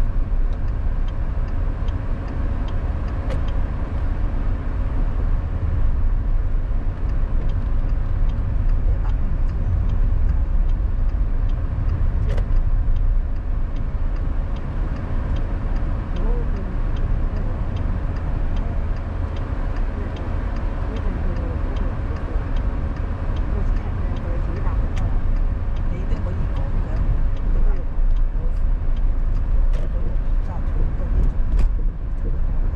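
A car driving in city traffic, heard from inside the cabin: a steady low rumble of engine and road noise.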